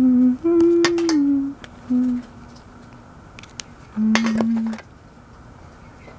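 A person humming four short notes: a low one at the start, a longer, higher one that steps down about a second in, then two more low notes, at about two and at about four seconds. Scattered light ticks of a pen tip dotting paper fall between and over the notes.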